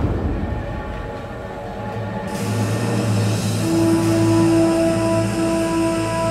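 Steam locomotive approaching with a low rumble, and a loud hiss of steam venting that starts suddenly about two seconds in. Tense background music with long held notes comes in underneath.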